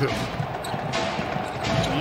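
A basketball being dribbled on a hardwood court, its bounces heard over a steady background of arena noise.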